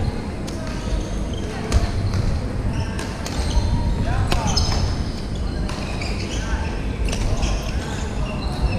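Badminton being played on several courts in a large hall: sharp racket hits on shuttlecocks and sneakers squeaking on the wooden floor, echoing in the hall.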